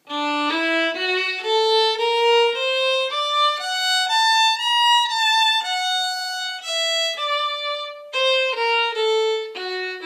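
Solo violin bowing an augmented-arpeggio lick with added notes, one sustained note after another. The line climbs for about five seconds and then steps back down to the pitch it started on.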